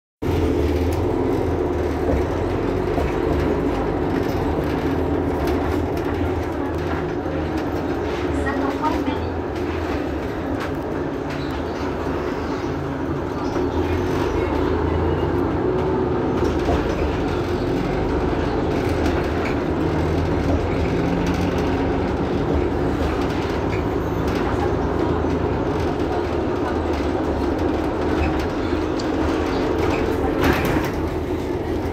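Mercedes-Benz Citaro G C2 articulated city bus idling at a standstill: a steady, low engine drone.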